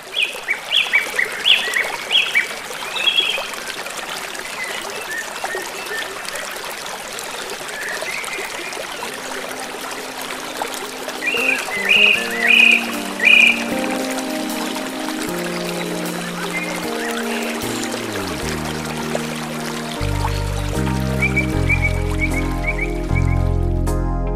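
Steady rushing of river water, with birds chirping in short bursts near the start and again about halfway through. Keyboard music fades in during the second half and dominates near the end.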